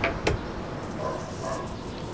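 20-inch electric floor fan, newly fitted with a replacement capacitor, running with a steady low hum. Two quick clicks at the start as its speed switch is turned from 3 to 2.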